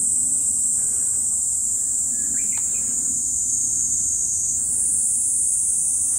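Dense insect chorus: a loud, steady high-pitched drone that shifts slightly higher about three-quarters of the way through, over a low rumble.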